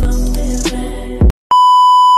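Background music with a beat that cuts off abruptly about a second in; after a moment of dead silence, a loud, steady, high test-tone beep starts near the end, the bars-and-tone beep that goes with TV colour bars.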